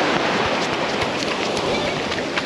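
Shallow surf washing up over sand and shingle at the water's edge: a steady rush of breaking foam.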